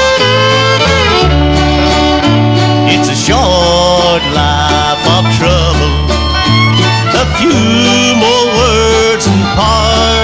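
Instrumental break of a 1950s–60s bluegrass band: a fiddle plays the sliding lead melody over steady string-band rhythm with an alternating bass.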